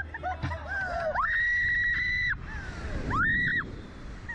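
Riders screaming as the slingshot ride fires them upward: rising yelps, then one long high scream of about a second and a shorter one near the end, over a rush of wind on the microphone.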